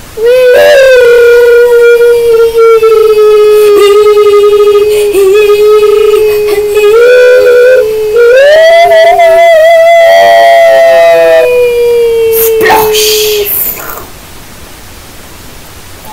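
A child's voice singing long held notes, mostly on one steady pitch with short breaks, stepping up higher near the middle and gliding back down before it stops well before the end.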